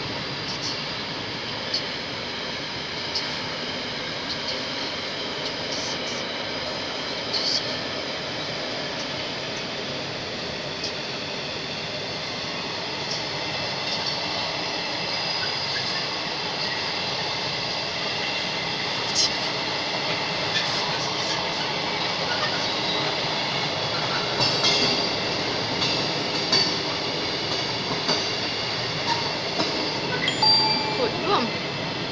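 Intermodal container freight wagons rolling past: a steady rumble of steel wheels on rail, with scattered sharp clicks as wheelsets cross rail joints and a thin high wheel squeal. It grows a little louder in the second half.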